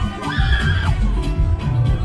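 Loud club dance music with a steady, heavy bass beat. Near the start, a brief high cry rises, wavers and falls away over the music, lasting under a second.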